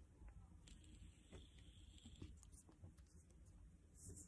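Near silence, with a faint hiss lasting about a second and a half as a man draws on a Crave Plus Max disposable vape, and a few faint ticks.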